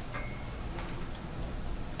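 Quiet room tone with a few faint, irregular ticks and a brief thin high tone near the start.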